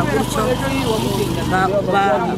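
A woman talking in Kinyarwanda, with a steady low hum underneath.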